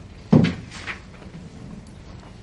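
A single sharp thump about a third of a second in, followed by a lighter knock about half a second later, over the steady low room tone of a library study hall. It sounds like a door, cupboard or piece of furniture being shut or set down.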